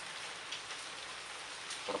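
Steady rain falling, an even hiss with no let-up.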